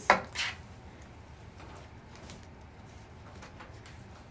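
Handling noise on a tabletop as a canvas tote bag is laid down: two quick knocks right at the start, then low room tone with a few faint clicks.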